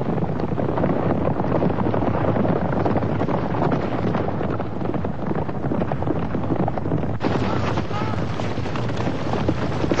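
Cartoon battle sound effects: a steady, dense din of an army in flight, with galloping horses and a mass of shouting soldiers over a low rumble.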